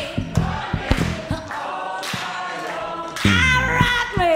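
Live blues duet of a woman's voice and an electric bass guitar. The bass plucks short low notes in the first part, the voice holds a long note through the middle, and a louder sung phrase comes in near the end.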